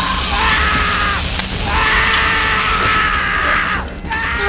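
A man screaming in long, strained cries as he is shocked with a taser, the cries breaking off once briefly. Dramatic film score and a dense hiss run underneath.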